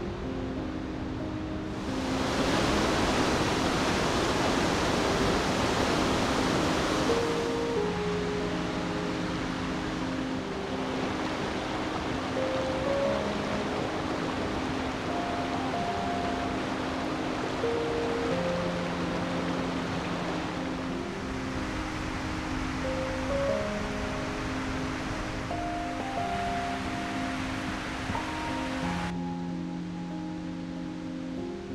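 Background music of slow, held notes over the steady rush of a rocky mountain river. The water sound comes in about two seconds in, is loudest for the next five seconds, and cuts off abruptly just before the end.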